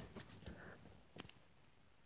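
Near silence: room tone, with a few faint ticks and one short click a little over a second in.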